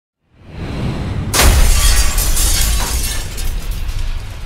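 Intro sting: a swelling rush of noise, then a sudden loud crash about a second and a half in, carried on over heavy bass.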